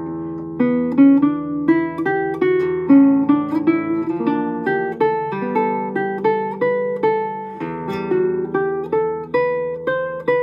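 Solo classical guitar played fingerstyle: a melody of single plucked notes, a few a second, over ringing bass notes.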